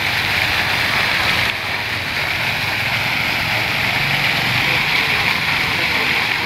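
Fountain water jets spraying and falling into the basin: a steady rushing hiss of water, easing slightly about a second and a half in.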